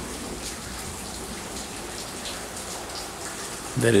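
Slow, steady drizzle falling, an even hiss of rain with a few separate drop ticks.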